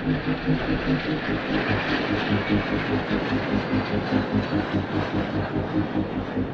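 Jet aircraft flying past overhead in formation, a steady rushing jet noise with uneven low pulsing underneath.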